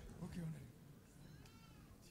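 Faint, low murmur of voices, with a short higher-pitched voice or call sounding briefly near the end.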